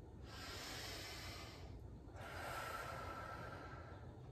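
A slow, deliberate deep breath, drawn in and let out, faint, in two long stretches of about a second and a half each with a short pause between.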